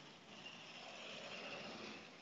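Faint road traffic noise, a low even hiss heard through a video-call link, with a faint high steady tone about half a second in.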